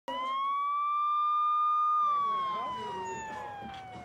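Police siren wailing: one long tone that climbs a little, holds, then slowly falls over the last two seconds. Crowd voices and street noise come in underneath about halfway through.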